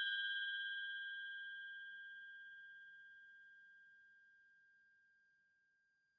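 The ringing tail of a single struck bell-like chime: one clear tone with fainter higher overtones, fading steadily and dying out about four seconds in.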